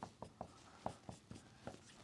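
Dry-erase marker writing on a whiteboard: a faint string of short, irregular strokes and taps as the letters are drawn.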